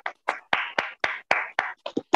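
Hand claps coming in over a video call: a quick, uneven run of claps, about four or five a second.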